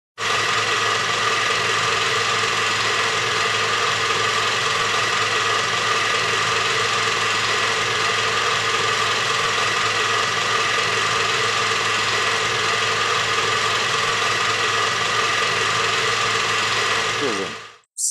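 Film projector sound effect: a steady mechanical whirring clatter that winds down with a falling pitch and stops just before the end.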